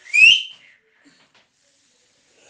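A short, high-pitched whistle rising in pitch, lasting about half a second.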